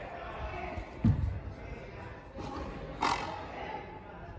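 Frontenis rally, echoing in the fronton hall: the hard rubber ball is hit, with a dull thud about a second in and a sharp crack about three seconds in.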